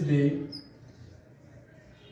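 Whiteboard marker writing across the board: a brief high squeak about half a second in, then faint scratchy strokes.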